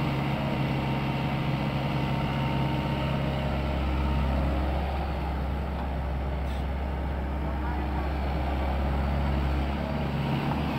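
SANY SY75C excavator's diesel engine running steadily close by, a deep hum that grows heavier in the low end about three and a half seconds in.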